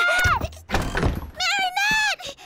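A heavy wooden thunk with a low rumble, about a second long and starting just after the opening, from a floor trapdoor being thrown open. A high voice sounds briefly at the start and again near the end.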